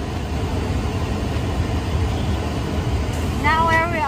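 Steady low rumble of road noise inside a moving car's cabin.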